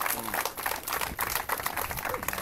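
A crowd clapping with a dense patter of irregular claps, mixed with voices.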